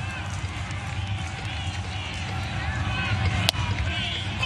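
Steady murmur of a ballpark crowd on a baseball broadcast, with one sharp pop about three and a half seconds in: a pitch smacking into the catcher's mitt.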